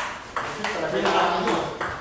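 Table tennis rally: the celluloid ball clicks sharply off the paddles and the table, with about four hits at uneven spacing.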